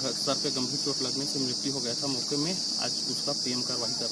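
Steady, high-pitched drone of insects, with a man's voice talking over it.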